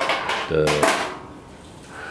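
A man's voice saying a word, with sharp clicks at the very start and about a second in.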